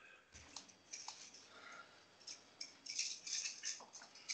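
Faint, irregular clicks and light rattles, sparse at first and more frequent in the second half.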